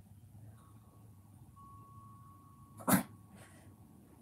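A single short, sharp burst of sound about three seconds in, with a faint steady high tone underneath before it.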